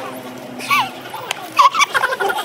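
Short bursts of high-pitched, wavering laughter, one about halfway in and a louder run near the end, with a sharp click between them.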